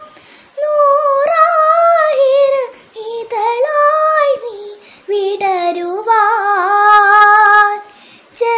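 A young girl singing solo and unaccompanied, in three phrases with short breaks between them. The last phrase ends on a long held note, the loudest part.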